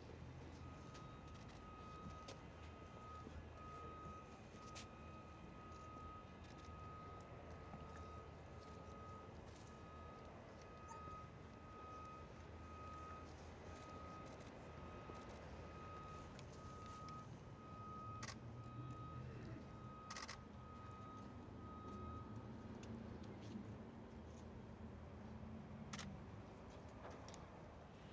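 Near silence: faint outdoor background with a faint high beep repeating about once a second that stops a few seconds before the end, and a few scattered faint clicks.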